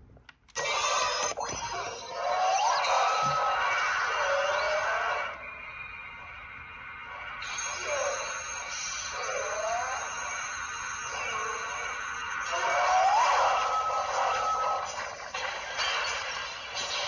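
Bandai CSM Orb Ring transformation toy playing music and electronic sound effects through its built-in speaker, starting just after a click. Swooping tones rise and fall over the music; it drops quieter in the middle and swells again near the end.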